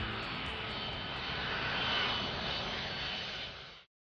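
Jet airliner passing overhead: a rushing engine noise with a high whine, swelling to its loudest about two seconds in, then fading and cutting off abruptly near the end.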